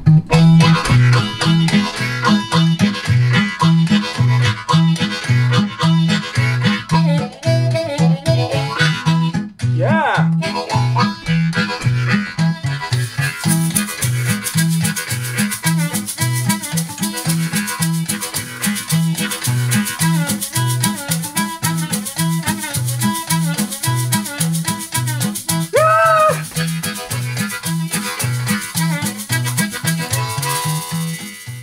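A-key diatonic harmonica playing a fast country-blues riff in a 3-3-2 rhythm (one-and-two-and-three, one-and-two-and-three, one-two) with blow and draw chords and bent notes, over a steady low pulsing backing groove. About 13 seconds in, a metal shaker joins with a steady rattle on the beat.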